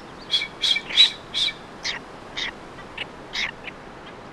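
Blue-footed boobies calling: a run of short, high call notes, about two a second, louder at first and growing fainter toward the end.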